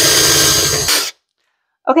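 Handheld power drill running steadily, a large twist bit boring into a hard fake-dirt layer over foam, then cutting off suddenly about a second in.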